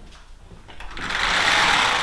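Wooden sliding door with glass panels rolling open along its track: a single rolling noise that swells and fades over about a second and a half, loudest near the end.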